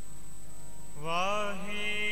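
Sikh kirtan singing: a man's voice comes in about a second in on a long held note that slides up and down in pitch, over steady sustained harmonium notes.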